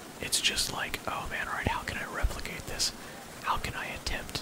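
A man whispering close into the microphone, soft speech with sharp hissy 's' sounds. A brief low thump comes just past halfway.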